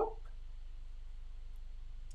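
A steady low electrical hum, with the tail of a spoken word fading out at the very start. No handling sounds from the beads or thread stand out.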